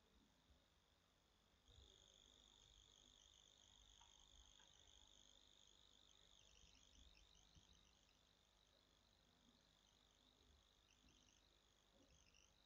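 Near silence: faint room tone with high-pitched insect trilling in the background, held steady for a few seconds and then breaking into short chirps, with a few faint clicks.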